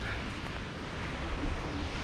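Steady rushing noise of a small waterfall, with wind rumbling low on the microphone.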